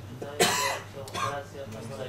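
A person coughing close to a microphone: one sharp cough about half a second in and a shorter one just after a second, with a little speech around them.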